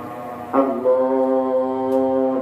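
A long, steady held musical note, starting about half a second in and sustained, with fainter wavering tones before it.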